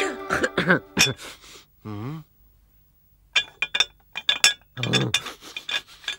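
A cartoon character's voice, a creature with a head cold, coughing in short fits, with about a second's pause in the middle.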